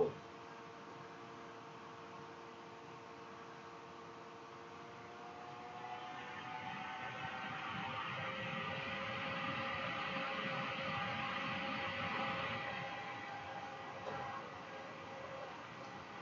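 A long hit on a dual-coil rebuildable dripping atomizer (0.65 ohm) fired at 5.55 volts: air hissing through the airflow holes and over the firing coils, swelling about six seconds in, holding for about eight seconds and fading near the end. A faint steady hum lies under it before the draw.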